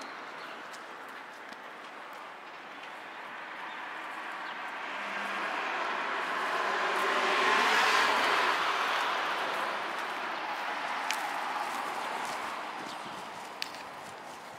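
Street traffic: a vehicle passing on the road, its noise swelling to a peak about halfway through and fading again, with a few faint clicks near the end.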